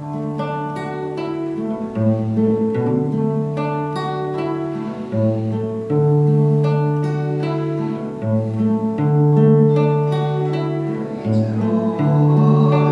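Classical guitar fingerpicking a steady arpeggio over alternating C and G chords, one bass note per bar with higher strings plucked above it.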